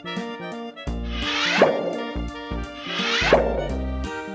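Light background music with a steady beat, over which two cartoon plop sound effects sound, about a second and a half in and again about three seconds in, each a quick sweep ending in a pop.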